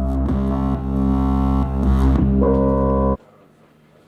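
Electronic drone music: a sustained, organ-like synthesizer chord of steady low and middle tones with a few small pitch slides, cutting off suddenly about three seconds in.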